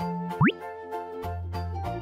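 Cheerful children's background music with a steady beat. About half a second in, a quick cartoon sound effect sweeps sharply upward in pitch and is the loudest sound.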